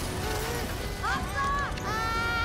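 Cartoon gas explosion: a loud, sustained blast rumble, with characters screaming over it in long held cries from about a second in.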